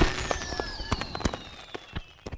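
Cartoon celebration sound effect: scattered small crackles and pops like firecrackers, with a thin whistle sliding slowly downward, the whole tail fading away.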